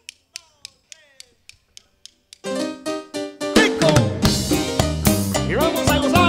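A count-in of about eight sharp clicks, roughly three a second, struck on drumsticks. About two and a half seconds in, the tropical band enters on held horn and keyboard chords, and bass and drums join about a second later as the first medley begins.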